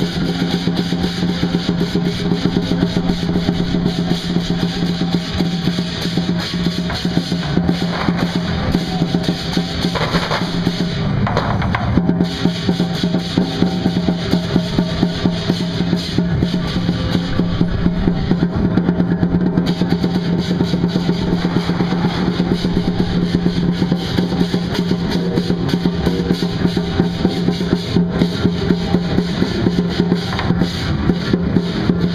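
Lion dance percussion: a large drum beaten in a fast, unbroken roll, with cymbals clashing along.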